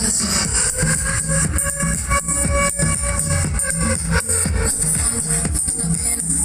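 Loud electronic dance music with a heavy bass and a steady beat, played over a carnival float's sound system.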